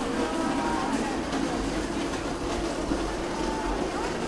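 Steady open-air ambience of an American football field, with faint distant voices from players and sidelines.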